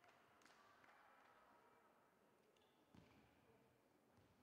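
Near silence: faint sports-hall room tone, with a few soft taps early on and a single dull thud about three seconds in.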